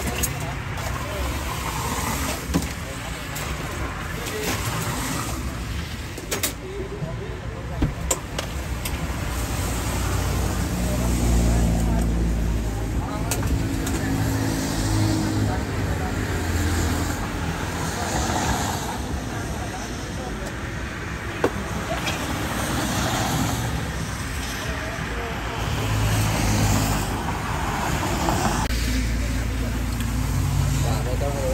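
Road traffic passing close by, vehicle engines rumbling low and swelling as they go past, with a few sharp clinks from drink-making at the counter.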